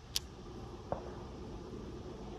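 Two brief sharp clicks, the first crisp and high, the second duller, a little under a second apart, over a steady low background rumble.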